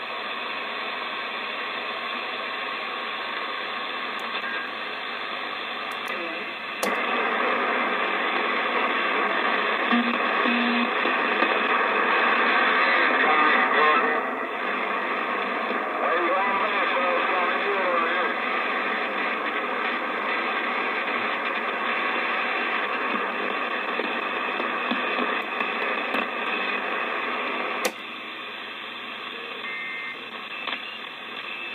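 President Adams AM/SSB CB transceiver receiving on the 11 m band: steady hiss and static from its speaker with faint distant voices under the noise. The noise jumps louder about seven seconds in and drops suddenly near the end as the channel is switched.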